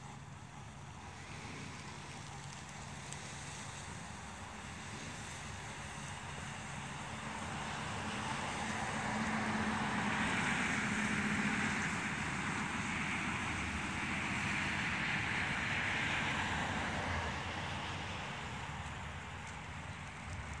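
Lawn sprinkler spraying water, a steady hiss that swells for several seconds in the middle as the spray sweeps across, then eases off.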